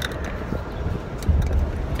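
Muffled rubbing and bumping of a hand on a handheld camera and its microphone, over a steady low rumble of a car cabin. The rumble swells about halfway through.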